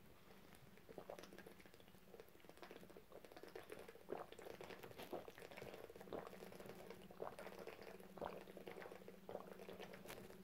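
A person drinking water in a long swig from an upturned plastic bottle: soft gulps about once a second, with the water glugging in the bottle, faint throughout.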